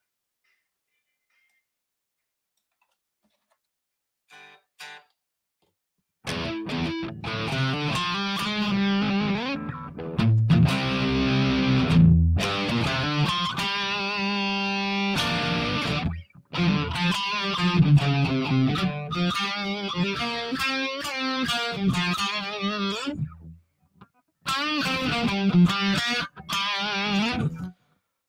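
Blues shuffle backing track in G with overdriven electric guitar, starting about six seconds in and cutting out briefly twice.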